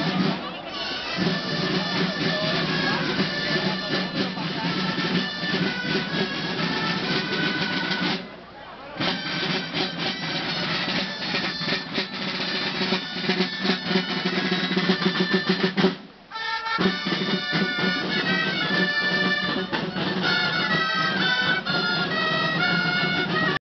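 A street band of dolçaines (Valencian shawms) playing a reedy melody over marching side drums. The music drops out briefly twice, about eight and sixteen seconds in.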